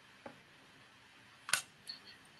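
A few sharp clicks over a quiet background hiss: a faint one about a quarter second in, a much louder one about a second and a half in, and a smaller one just after it.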